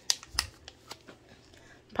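Small zip-top plastic bag of wax melts crinkling as it is picked up and handled, with a few sharp crackles in the first half second and fainter ones after.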